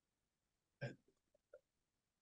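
Near silence over the call's room tone, broken a little under a second in by one short throat noise, like a hiccup, followed by a couple of faint ticks.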